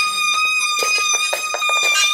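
Loaded True Temper wheelbarrow squeaking as it is pushed: one steady, unbroken high-pitched squeal with its overtones, and a scatter of light knocks from the rolling barrow.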